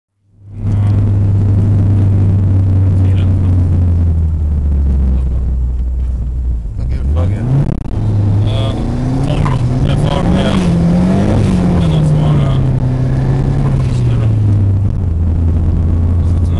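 Car engine heard from inside the cabin, a steady low drone, then revving up sharply about seven seconds in and rising and falling in pitch as the car pulls away and accelerates.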